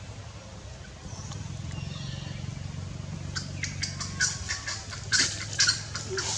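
Baby macaque giving a run of short, sharp high squeaks starting about halfway in, loudest near the end, over a low steady hum.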